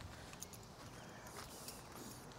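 A few faint footsteps on pavement over quiet outdoor background noise.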